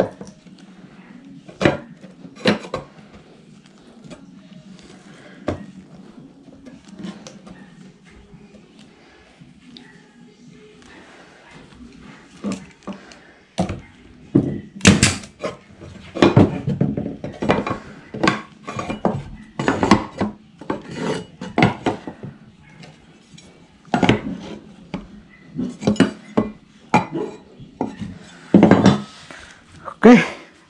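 Pneumatic nailer driving nails into the wooden corners of a drawer box: a run of short, sharp shots, dense through the second half, with a few scattered knocks of wood and a metal square being handled in the first half.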